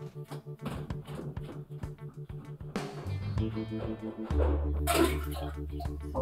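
Background film-score music: plucked guitar over a bass line, the bass changing note a few times.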